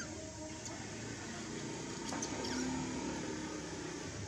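A few faint, short, high-pitched animal squeaks or chirps over a steady low hum.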